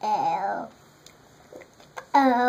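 A young child's brief wordless whine, falling in pitch over about half a second at the start.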